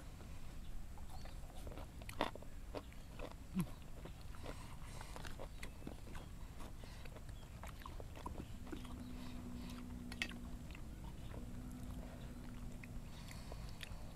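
Quiet eating sounds: chewing and mouth noises with scattered small clicks and taps of fingers and a spoon on the food and stone mortar, and a short 'hmm' about three and a half seconds in. A faint steady low hum runs from about the middle until shortly before the end.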